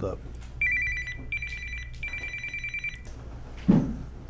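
Electronic telephone ringer trilling: a high two-tone warble, pulsing rapidly, sounding in three bursts over the first three seconds. A brief low sound follows near the end.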